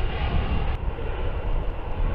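Propeller aircraft engines droning steadily, a deep continuous rumble from a formation of planes passing overhead.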